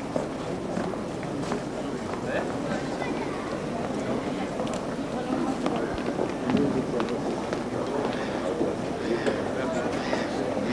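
Busy pedestrian-street ambience: indistinct chatter of passers-by with scattered footsteps on paving, at a steady level.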